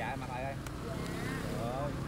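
People talking over the steady low hum of motorbike street traffic, with a single sharp click a little over half a second in.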